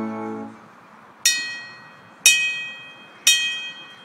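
A brass band's held chord cuts off about half a second in. A bell is then struck three times, about a second apart, each stroke ringing out and fading.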